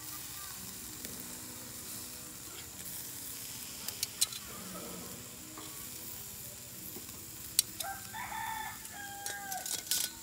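Pork sizzling steadily over hot coals on a charcoal kettle grill, with a few sharp clicks. Near the end a rooster crows once, for about two seconds.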